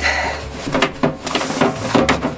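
Thin sheet-metal stovepipe being flexed by hand as its lengthwise slot-and-tab seam is forced together: a rasp of metal on metal, then a run of short sharp clicks and scrapes as the seam begins to seat.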